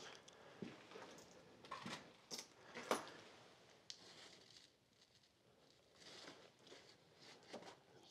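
Faint, scattered rustles and crackles of brittle old paper pages being handled and lifted, with a few sharper crackles in the first three seconds and a near-silent gap around the middle.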